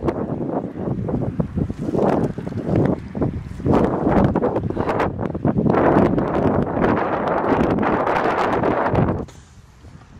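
Wind buffeting the phone's microphone in strong, uneven gusts, dropping away about a second before the end.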